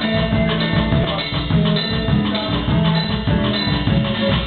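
Live band playing an upbeat Latin-flavoured groove on drum kit and guitar, with a lead line of held notes from a harmonica played cupped against a hand-held microphone.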